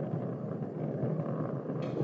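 Steady low rumble of Space Shuttle Atlantis's rocket motors during ascent, an even noise with no distinct events.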